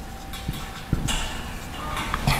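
Marker pen writing on a whiteboard: a few light taps of the tip and short, high scratching strokes.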